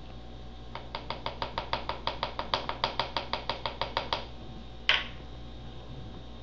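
A plastic scoop tapped rapidly against the rim of a plastic mixing container to knock its contents into the soap batter, about seven light taps a second for three seconds. One sharper click follows near the end.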